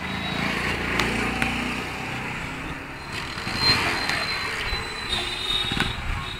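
Road traffic: a motor vehicle's engine rumbles past close by in the first couple of seconds, followed by general street noise.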